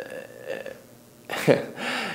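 A man's short breathy laugh about a second and a half in, after a brief lull.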